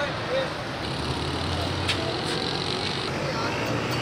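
Roadside traffic noise, with a vehicle's low engine rumble swelling between about one and three seconds in, and a couple of sharp clicks.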